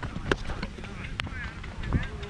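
Wind rumbling on a helmet-mounted microphone, with a few sharp footfalls or knocks on the dry pitch and faint distant voices calling across the field.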